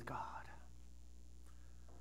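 A man's voice ends a spoken word about half a second in, then a pause of quiet room tone with a low steady hum.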